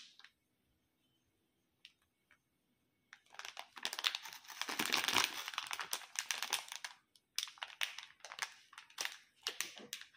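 A clear plastic candy tray and its wrapping crinkling as hands handle it. There are a few isolated crackles, then about four seconds of continuous crinkling starting some three seconds in, then scattered crackles again.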